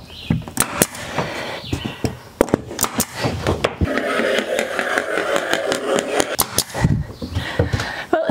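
Scattered sharp clicks and knocks of tools being handled against a beadboard ceiling as stud lines are marked with a level. There is a stretch of scraping in the middle.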